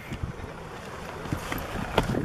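Wind buffeting the microphone, an uneven low rumble, with a small knock near the end.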